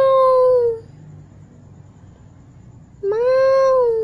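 Domestic cat yowling: a long drawn-out call that trails off under a second in, then another starting about three seconds in, each steady in pitch and dipping slightly as it ends.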